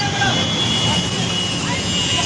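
Street noise of a traffic jam: motorcycle and scooter engines running amid a babble of voices.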